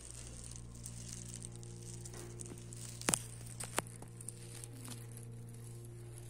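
A steady low mechanical hum, with two sharp clicks about three seconds in.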